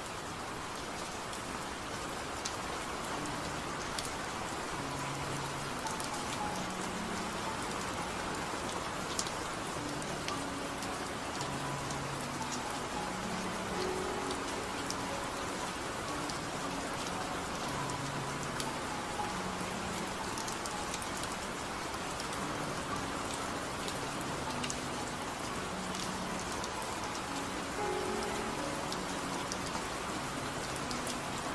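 Steady rain with soft scattered drop ticks, mixed with slow, soft music of low held notes that change every second or two.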